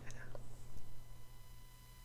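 Quiet pause between voices: a faint breath-like trace of the voice right at the start, then low background with a steady hum and faint thin steady tones.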